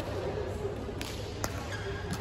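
Badminton rackets striking a shuttlecock in a rally: two sharp cracks about half a second apart, the second louder, over faint background voices.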